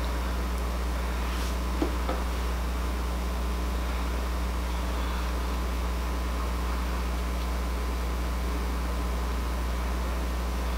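Steady low electrical hum with an even hiss underneath, unchanging throughout, and one faint click about two seconds in.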